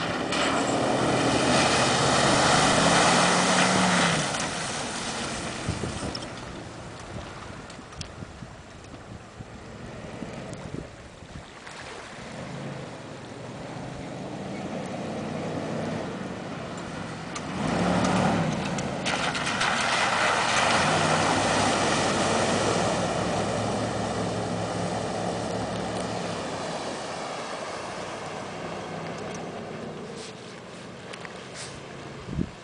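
Jeep Cherokee 4x4 engine revving as it drives through a shallow pond, its wheels sending up loud splashing water. The splashing is loudest in the first few seconds and again from just past halfway, with the engine alone on the mud between.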